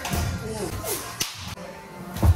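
A single sharp crack a little over a second in: a pitched baseball striking at home plate. Music and voices run underneath.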